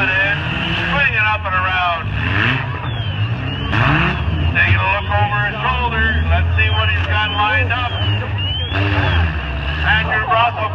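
Demolition derby cars' engines running and revving, loudest in the middle of the stretch, with a broad burst of noise about four seconds in, heard under voices from the crowd and the announcer.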